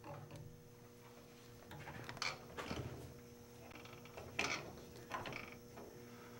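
Drill press spindle running with no load, a faint steady hum, while a few light clicks and knocks come from the quill being lowered to bring the bit almost down to the metal.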